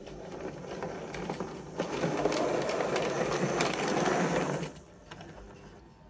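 OO gauge model steam tank locomotive and wagons running on the track: the small electric motor whirring and the wheels rumbling on the rails. It grows louder as the train approaches, then drops away sharply about five seconds in as the train comes to a stand.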